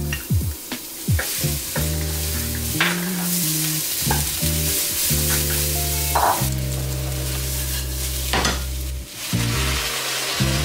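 Minced aromatics and then risotto rice sizzling in hot oil in a nonstick pan, stirred with a wooden spoon that scrapes and taps the pan. Background music with a steady bass line plays over it.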